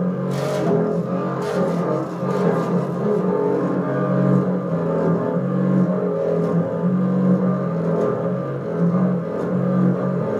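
Solo double bass played with a bow: long, sustained low notes, one after another.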